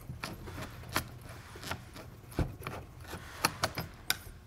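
Small metal clicks and scrapes from the front receiver cap of a Beretta PM-12S submachine gun, worked loose by hand while its spring-loaded keeper is held down. The clicks are irregular: a sharper one about a second in, another past halfway, and a quick run of them near the end.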